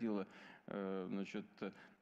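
Only speech: a voice talking faintly, low in the mix, in two short stretches.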